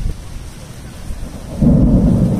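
Low rumble of thunder in a rainstorm, swelling suddenly near the end.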